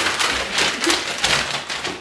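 A sheet of paper being crumpled by hand: a dense run of rapid crackles.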